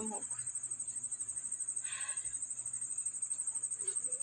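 Crickets chirping: a steady, high, rapidly pulsing trill that runs on without a break.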